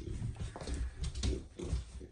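American bully puppy playing with toys on a rug: short dog noises and a few light knocks as it moves and grabs a toy.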